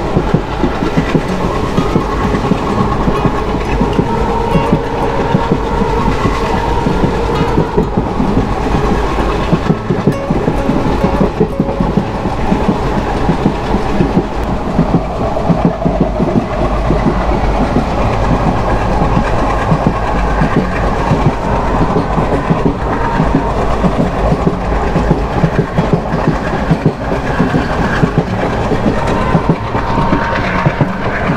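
Passenger train running along the track, heard from beside the coaches: a steady rumble of wheels on rail with continuous clickety-clack.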